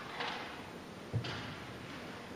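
Three short rustles over quiet hall noise, the last with a soft low thump about a second in: band members shifting in their seats and handling their music between passages.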